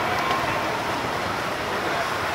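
Steady outdoor background noise, an even wash with no distinct single source standing out.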